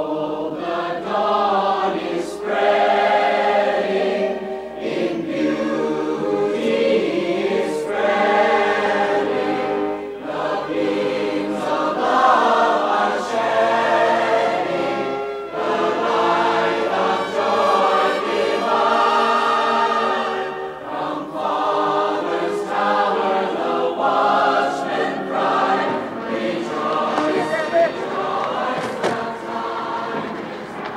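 A choir singing, many voices together, steady and continuous.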